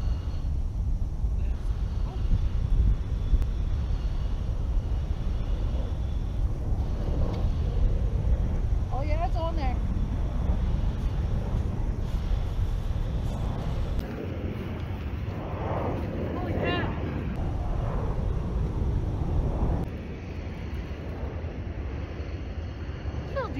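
Low rumble of wind buffeting the microphone, easing about two-thirds of the way through, with faint voices talking in the background.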